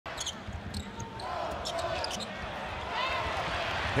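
Basketball dribbling on a hardwood court and sneakers squeaking in short chirps as players cut and lunge, over steady arena crowd noise.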